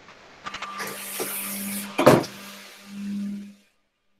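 Vacuum cleaner running close by, a rushing noise over a steady hum, with a sharp knock about two seconds in; the sound cuts off abruptly shortly before the end.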